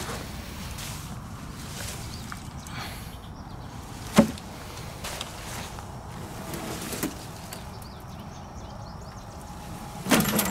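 Footsteps and camera handling in wet undergrowth, with one sharp knock about four seconds in and a softer one near seven seconds, as of objects on the ground being moved.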